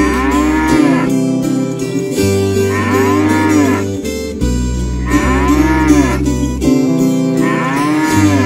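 A bull mooing sound effect, repeated four times about every two and a half seconds, each moo rising and then falling in pitch. Under it runs an instrumental backing track with plucked guitar and a steady bass.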